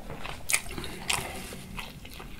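Close-miked chewing of a mouthful of food, with wet mouth clicks and two sharper clicks about half a second apart, the first the loudest.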